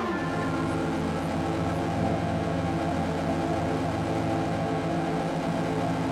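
ASM Hydrasynth synthesizer music: a chord of tones slides down in pitch right at the start, then holds as a steady, sustained drone with a pulsing low note.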